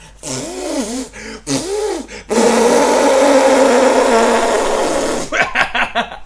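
A loud, sustained fart noise lasting about three seconds, starting a little over two seconds in, used as a gag. Before it come short vocal sounds.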